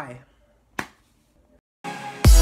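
The tail of a spoken goodbye, then a single sharp click a little under a second in, followed by a moment of dead silence.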